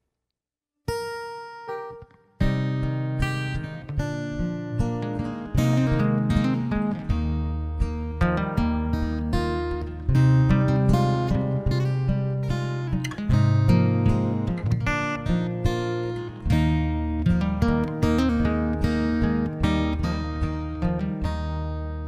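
Two acoustic guitars playing a song's instrumental introduction. A single ringing note sounds about a second in, and full playing with steady bass notes starts about two and a half seconds in.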